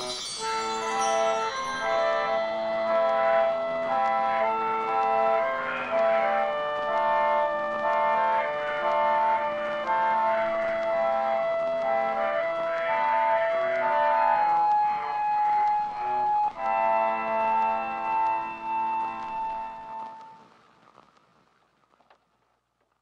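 Pump organ (harmonium) playing the instrumental close of a song: held reedy chords under a slow melody, fading out near the end.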